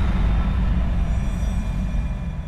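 Logo-sting sound effect: a deep, low rumble that slowly fades, with faint high ringing tones coming in about a second in.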